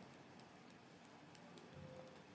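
Near silence: quiet room tone with a few faint ticks of a stylus on a writing tablet as a word is handwritten.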